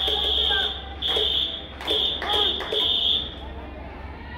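A shrill, single-pitched cheering whistle blown in five blasts of varying length, mixed with voices shouting along from the stands, then it stops near the end.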